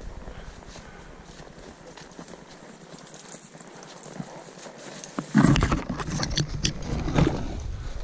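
A horse walking on a trail covered in dry fallen leaves, its hoofsteps faint and scattered at first, with a burst of louder, irregular sounds from about five seconds in.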